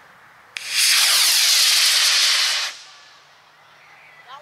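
Model rocket motor igniting with a sharp crack about half a second in, then a loud hiss of burning thrust for about two seconds that fades away as the rocket climbs.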